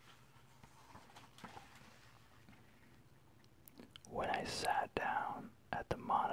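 Soft paper rustle of a picture-book page being turned by hand. About four seconds in, close-up whispering begins, with a couple of sharp clicks in it.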